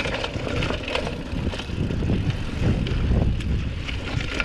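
Hardtail cross-country mountain bike riding fast down a dirt trail: a continuous low rumble with many sharp rattles and knocks as the bike goes over roots and bumps.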